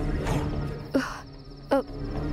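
Steady chirping of crickets, over a low steady hum. About a second in there is a brief breathy burst, and near the end a short, loud voiced exclamation with falling pitch.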